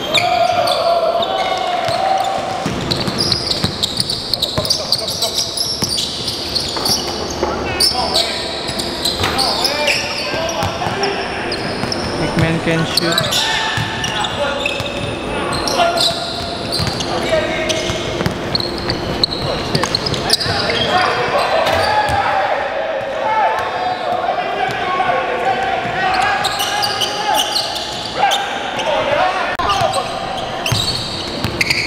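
Live basketball play in a gym: a basketball bouncing on a hardwood court, with players' voices calling out, all echoing in a large hall.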